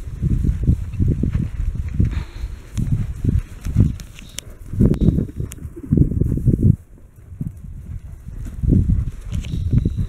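Hooves of several horses thudding on soft pasture ground as they trot and canter past close by, in irregular clusters of dull thumps that ease off for a couple of seconds after the middle.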